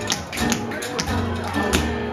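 Jug band playing live: a bass line and guitar under sharp percussive taps, about four a second.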